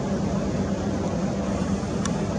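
A steady, unchanging mechanical hum with an even rumble underneath.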